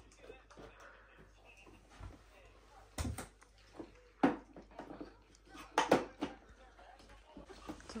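Hard plastic parts of a ride-on unicorn toy knocking and rattling as packed pieces are pulled out of its hollow legs. A few separate clacks, with the busiest cluster about three-quarters of the way through.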